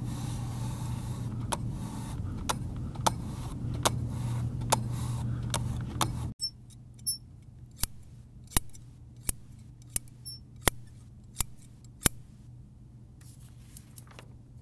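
A computer mouse clicking every half-second or so over a low steady hum. Then, with the hum gone, scissors snip through paper: a run of about eight sharp snips, evenly spaced less than a second apart.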